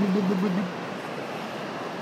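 A short, wavering voice sound for the first moment, then a steady rush of surf and wind on the beach.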